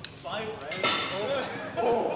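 Men's voices talking and reacting, not clearly worded, with a sharp metallic click at the very start and another a little under a second in.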